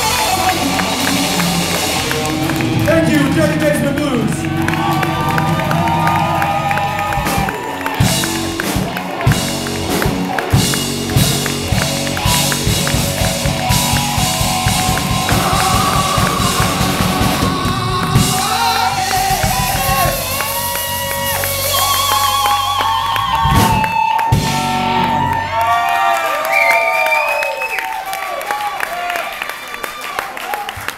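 Live blues band playing a slow blues, with a man singing over electric guitar, bass and drums. The band stops about 26 seconds in, leaving voices and whoops from the crowd.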